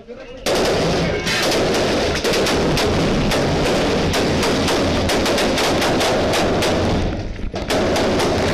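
Sustained automatic rifle fire, a dense rapid stream of shots. It starts about half a second in, breaks off briefly near the end and then starts again.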